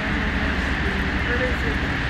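Steady outdoor city background noise with a low rumble, and a faint voice in the distance about one and a half seconds in.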